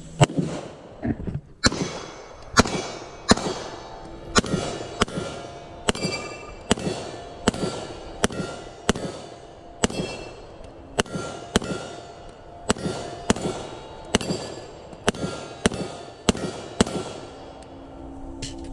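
A handgun fires a long, even run of shots, about one every half to three-quarters of a second, at steel targets. Each shot is followed by a brief ringing clang as a steel plate is hit.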